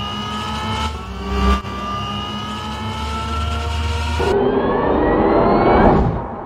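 Car engine sound effect accelerating: a steadily rising engine note with a short loud jump about a second and a half in as it shifts gear, then climbing again. Near the end it turns muffled and swells into a rising whoosh that peaks at the end.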